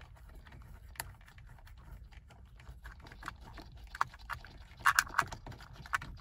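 Light, scattered metallic clicks and ticks as the 15 mm steering wheel nut is unscrewed from the column shaft by hand, with a quicker run of clicks about five seconds in.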